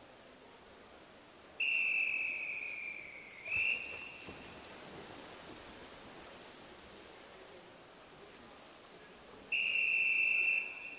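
Referee's whistle blasts on pool deck: a long blast beginning about a second and a half in, dipping slightly in pitch, then a short note. Another long blast starts near the end. At a backstroke start, these long blasts call the swimmers into the water and then to the wall.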